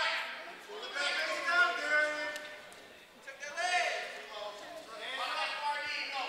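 Raised voices calling out in bursts during a wrestling bout, with a short lull about halfway through.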